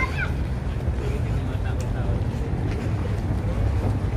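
Steady low rumble of wind buffeting the camera's microphone while walking outdoors.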